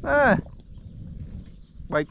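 Speech only: a short shouted call of "hey" in a person's voice, its pitch falling, then the start of the next word near the end, over faint outdoor background noise.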